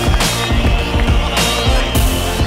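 Background music with a heavy electronic beat and strong bass.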